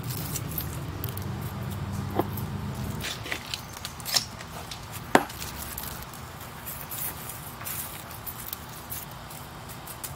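Hands and metal tweezers digging succulents out of dry, gritty potting soil: soil rustling and scraping, with a few sharp clicks, the loudest about five seconds in. A low steady hum runs under the first three seconds and then stops.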